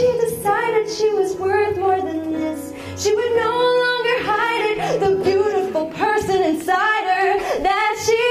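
Woman singing a slow song with long held notes that waver in pitch, over a backing of sustained low notes.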